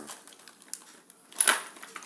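Light clicks and rattles of a corded electric drill and its power cable being handled in a hard plastic tool case, with one sharper clack about a second and a half in. The drill is not running.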